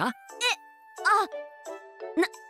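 Two short startled voiced exclamations, "eh" and "ah", over soft background music with sustained, tinkly tones.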